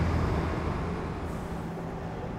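Steady low rumble of city traffic, easing off slightly over the two seconds.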